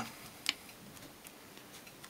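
Ballpoint pen tip embossing a small sheet of painted aluminium drink can on a cork mat: faint scratchy ticks, with one sharper tick about half a second in.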